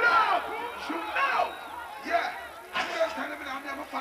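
Excited shouting voices with crowd noise, including a man's voice on a microphone, over a faint, evenly repeating bass beat.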